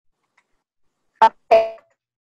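Near silence, then a short two-note chime about a second in: a brief higher note followed by a lower one that rings out and fades quickly, typical of a video-call notification sound.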